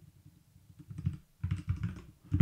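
Typing on a computer keyboard: a few faint keystrokes, then a quick run of key clicks through the second half.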